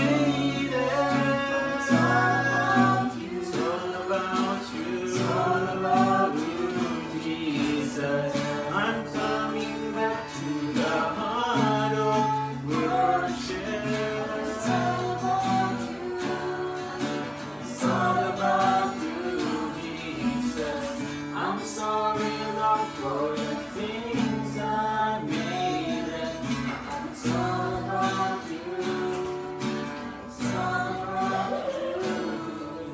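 Acoustic guitars strummed and picked while a small group sings a Christian worship song together, mixed male and female voices over steady chords.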